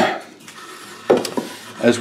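Thin wooden boards clattering and knocking against a wooden box as they are handled and set in place: two sharp knocks, one at the start and one about a second in.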